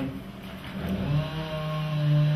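A short pause, then from about a second in a man's voice holding one low, steady drawn-out vowel sound.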